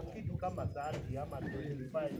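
Indistinct men's voices talking at a distance, no words clear enough to make out.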